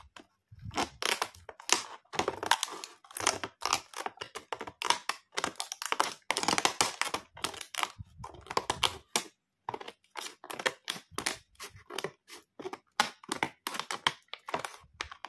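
Stiff clear plastic blister packaging crackling as it is handled and cut open with scissors: a dense, irregular run of crinkles and sharp clicks.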